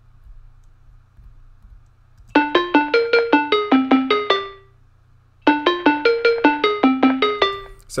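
A short melody of about a dozen quick, decaying keyboard-like notes played by the Omnisphere synth from MIDI that Audio Cipher generated from the words 'bring it home' in C minor. It starts about two seconds in, ends on a held note, and plays a second time after a brief pause.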